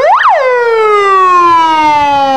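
Ambulance siren: a fast wail sweeping up and down in pitch, which a little under half a second in stops cycling and slides slowly down in one long falling tone.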